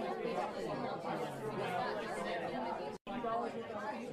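Faint chatter of many overlapping voices, with a brief break in the sound about three seconds in.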